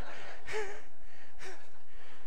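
Two soft, breathy chuckles, about half a second and a second and a half in, over a steady room hiss.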